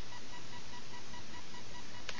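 Steady background hiss with a faint, pulsing high tone running under it, the recording's own noise and interference; no distinct handling sounds stand out.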